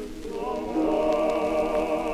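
Soprano voice singing with a wide vibrato on an early electrical 78 rpm gramophone recording: a brief dip between phrases at the start, then a new note taken up about half a second in and held.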